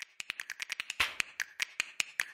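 A glitch-style video transition sound effect: a rapid, irregular run of sharp clicks and ticks, with a slightly fuller swoosh-like burst about halfway through.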